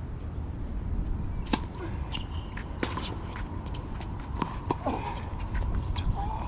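Tennis ball being struck by rackets and bouncing on a hard court during a doubles point: a series of sharp pops, several of them, starting about a second and a half in.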